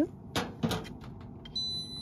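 Two short scuffs about half a second in, then an electronic appliance's beep as it is switched off: a steady high tone starting about a second and a half in and held for half a second.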